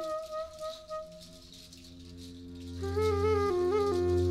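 A hand shaker rattles along with a small wooden flute, which holds a long note that fades out about a second in and then starts a new stepping phrase at about three seconds. Beneath them a double bass sustains a low note.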